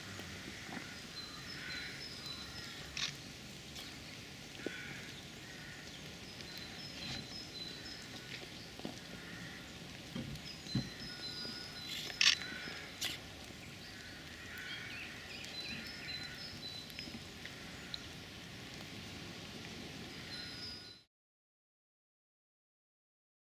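Outdoor ambience: a steady low hiss with short bird calls every few seconds and a few sharp clicks. The sound cuts off abruptly near the end.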